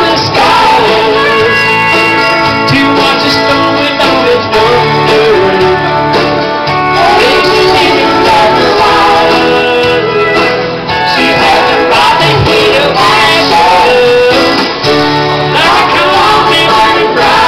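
Country song with guitar accompaniment, a man singing live into a handheld microphone over it through a bar PA.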